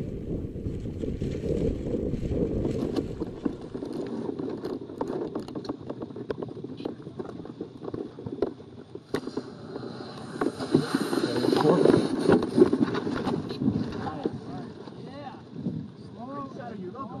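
Wind buffeting the microphone of a camera riding on a balloon-borne payload, with scattered light knocks and rattles from the payload frame as it swings. The wind noise swells about ten to thirteen seconds in.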